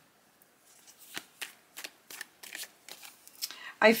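A deck of tarot cards being shuffled by hand: a run of quick, irregular card flicks and taps that starts about a second in.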